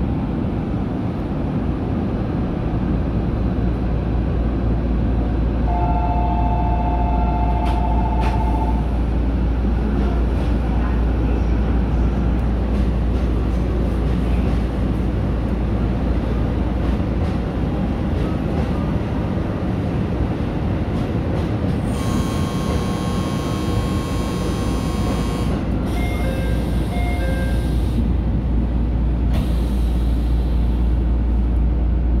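JR 313 series electric train running steadily along the line, its continuous low rumble heard from inside the leading car. A steady two-note tone sounds for about three seconds early on, and a brighter multi-tone sound follows for about three seconds past the middle, then short broken tones.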